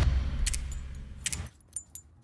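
The tail of the channel's intro sound track fading away, with a few light clicks, down to near silence about a second and a half in.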